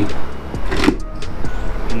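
Full-face motorcycle helmet's clear plastic visor swung down and clicking shut.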